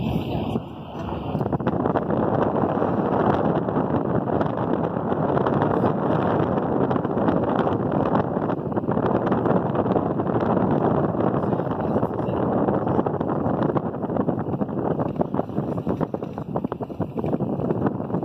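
Steady wind rushing and buffeting over the phone's microphone at the open window of a moving car, with the car's road noise underneath.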